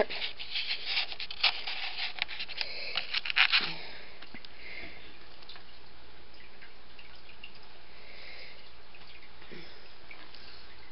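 Quick faint clicks and small water sounds as fingers handle a foam dish with a little water in it, lasting about three and a half seconds, then a steady faint hiss.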